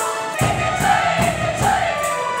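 A choir singing to electronic keyboard accompaniment over a fast, steady, high rattling beat. The sound grows fuller and lower about half a second in, as more voices come in.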